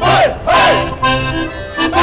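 Folk dancers shouting "hoi!" twice, about half a second apart, over accordion-led folk dance music.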